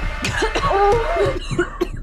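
A person's voice in a quick run of short, broken vocal sounds that rise and fall in pitch, over a steady low hum.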